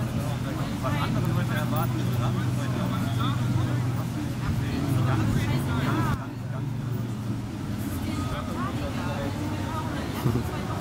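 Several people's untranscribed voices chatter over a steady low hum. The voices drop somewhat about six seconds in.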